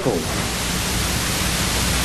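Steady, fairly loud hiss spread evenly from low to high pitch, with a faint low hum under it: the background noise floor of the room recording while the man is silent. The end of a man's voice dies away in the first moment.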